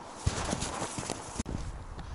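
Footsteps in snow at a slow walking pace: a few separate soft crunching steps with a low rustle between them.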